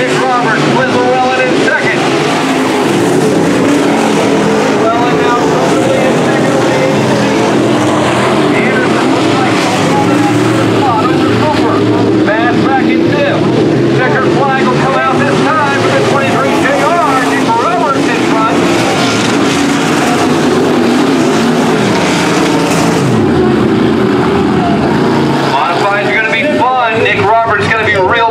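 Dirt-track modified race cars running laps on the oval, their engines rising and falling in pitch as they accelerate and lift around the track.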